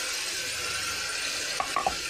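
Wet ground spices sizzling as they hit the hot oil and onion-ginger-garlic masala in a metal pressure cooker, stirred with a spoon. There are a few short knocks of the spoon against the pot near the end.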